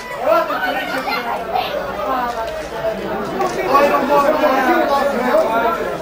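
Several people talking over one another: a steady chatter of voices with no pause.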